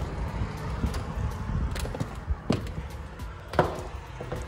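A few sharp clicks and knocks from a door's lock and handle being worked and the door opened, the two loudest about two and a half and three and a half seconds in, over a low steady background.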